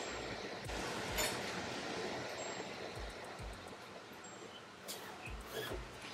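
Pencil drawing on pattern paper, a soft scratchy hiss, with a few light knocks and clicks as the ruler and paper are handled.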